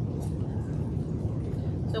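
Steady low rumble of greenhouse ventilation fans, with a faint rustle near the start as an orchid is being staked.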